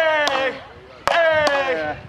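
Wooden frescobol paddles hitting a rubber ball in a fast rally, giving a few sharp cracks about half a second apart. Two drawn-out shouts of "Hey!" fall in pitch over them.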